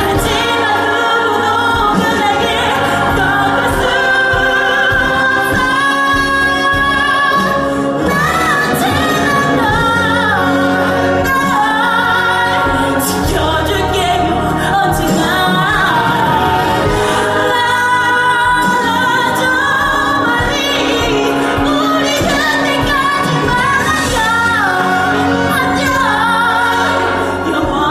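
A woman singing a musical-theatre ballad solo over instrumental accompaniment, her pitch gliding and wavering on long held notes.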